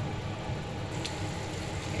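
Chicken liver adobo simmering in vinegar under a lid on a gas burner: a steady low bubbling hiss with a faint click about a second in.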